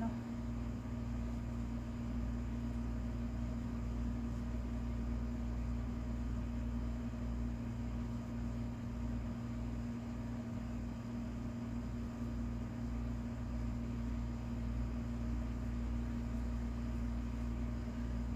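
A steady low hum with a faint even hiss and no distinct events.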